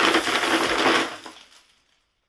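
A fast, dense clatter of LEGO spring-loaded shooters firing one after another down the tower as the dropped weight strikes them, with the plastic missiles rattling as they fly. It dies away about a second and a half in.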